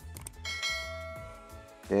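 A couple of quick clicks, then a single bell chime that rings out and fades over about a second and a half: the notification-bell sound effect of a YouTube subscribe-button animation, over background music.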